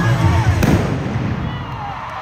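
A live rock band's last hit ends the song with a sharp crash about half a second in. The crash rings out under an arena crowd that is screaming and cheering.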